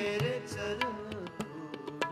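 Shabad kirtan: harmoniums holding a sustained melody, a voice singing over them, and the tabla striking now and then with crisp strokes.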